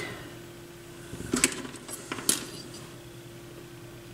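A few light metallic clicks and clinks as the loose tonearm tube of an AR XB turntable is handled and fitted, a cluster about a second in and another just after two seconds.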